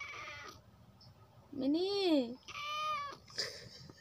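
House cat meowing: a short high meow right at the start, then more calls from about halfway through, one rising and falling in pitch, mixed with a person's voice.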